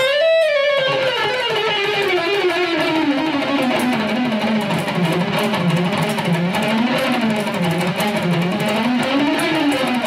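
Electric guitar playing a sustained lead note that slides slowly down in pitch over the first few seconds, then wavers up and down in a slow, wide vibrato.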